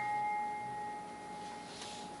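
Stage piano's high note, struck just before, ringing on and slowly fading away.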